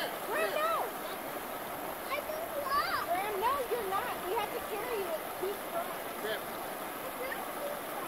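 Steady rush of a shallow river, the Pedernales, flowing over a rock ledge, with high voices calling out over it now and then.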